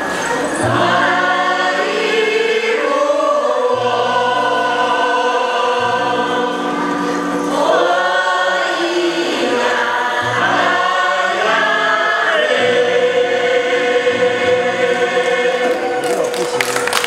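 Village choir singing a traditional Paiwan chant unaccompanied in several-part harmony, the parts moving together in sustained phrases and ending on a long held chord.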